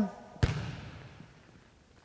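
A single basketball bounce on a hardwood gym floor about half a second in, its echo dying away over the next second.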